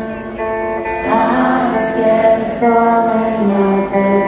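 Rock band playing live on electric guitars, bass and drums, with sustained chords changing about once a second and a cymbal crash near the middle.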